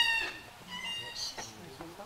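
Two short high-pitched calls: one at the very start and a thinner, steadier one about a second in.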